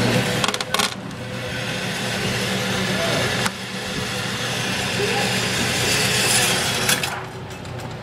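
.22 gunshots, three sharp cracks roughly three seconds apart (just under a second in, midway, and near the end), each followed by a brief dip in the recording's loudness, over a steady background hum.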